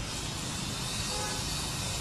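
Steady background noise with a faint hum.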